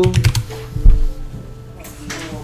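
Keystrokes on a computer keyboard: a few quick clicks near the start and a heavier knock about a second in, over steady background music.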